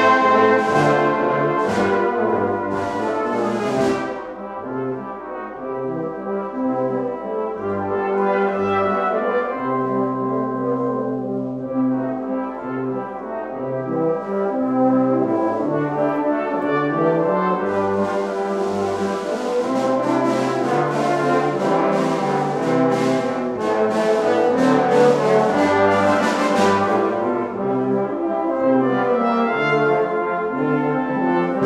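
Salvation Army brass band playing a piece together: cornets, horns, trombones and basses. It softens about four seconds in, then grows fuller and louder past the middle.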